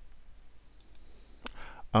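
A single computer mouse click about one and a half seconds in, against low room tone.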